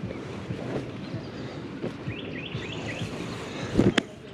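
Outdoor ambience: small birds chirping, with clothes rustling as they are handled. There is a brief low burst of wind on the microphone near the end.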